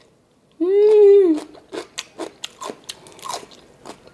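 A person biting and chewing a soy-sauce-pickled cucumber (oiji). A short hummed 'mm' comes about half a second in, then crisp crunches several times a second. The crunch, 'crunchy and crisp' to chew, is the sign of firm, well-pickled oiji.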